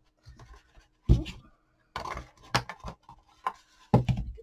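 Handling sounds of cardstock and ribbon on a craft table: soft paper rustling with several sharp taps and knocks spread through, as a paper purse and a bone folder are moved and set down.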